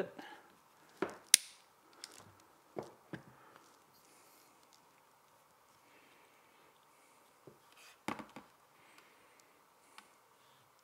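Sharp clicks and knocks from a tripod being lowered and the camera on it handled: a few close together in the first three seconds, the loudest about a second and a half in, and a short cluster again about eight seconds in.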